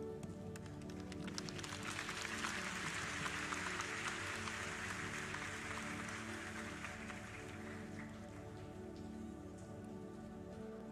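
Audience applause that swells about a second in and dies away by about eight seconds in, over soft sustained background music.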